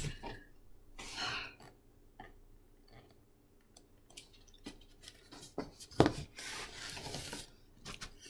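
Cardboard scraping and rubbing against cardboard as a large box is slid and lifted out of a shipping carton, with scattered knocks and one sharper bump late on.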